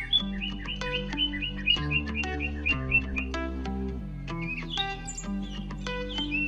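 Background music with sustained notes and a bass line, with a small bird chirping over it in quick, evenly repeated chirps through the first half and again near the end.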